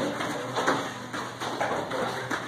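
Soft thuds and slaps of karate sparring on foam mats: feet landing and padded strikes, about six irregular knocks in two seconds, over a faint, steady low hum.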